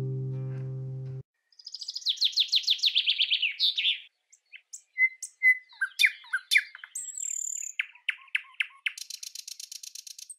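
The final chord of a fingerpicked classical guitar rings, then cuts off abruptly about a second in. Birdsong follows: a rapid run of trilled notes, then scattered chirps and whistles, and another fast trill near the end.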